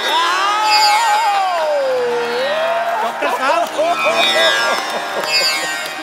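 A man singing a long, gliding held note in mock Indian classical raga style over a steady drone accompaniment. In the second half the note gives way to short wavering vocal sounds and crowd noise.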